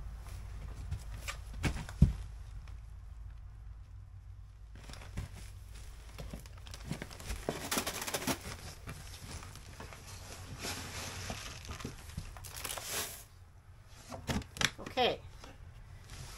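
Plastic feed bags crinkling and rustling while goat feed is handled and put into plastic storage bins, with a sharp knock about two seconds in. A few sharp clicks near the end as the bin's snap-lid latches close.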